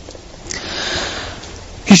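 A man drawing one audible breath in, a breathy inhale of about a second and a half between sentences; speech starts again right at the end.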